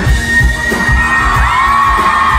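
Woman belting a sustained high B-flat 5 over a live band with a steady drum beat, with audience cheering underneath.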